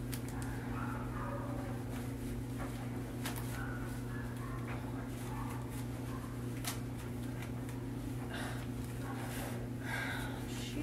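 Steady low electrical hum of room equipment, with faint crinkling and light clicks as a sterile surgical glove is worked onto a hand.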